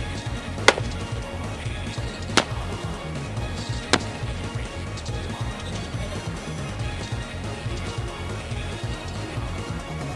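Three sharp rifle shots from a Browning BAR semi-automatic in .30-06, about a second and a half apart in the first four seconds, heard under steady background video-game music.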